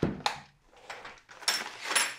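A cardboard-wrapped six-pack being slid into a soft fabric cooler bag: a soft knock at the start, light rustling of the bag's shell, then a louder scraping rustle in the last half second as the pack goes in.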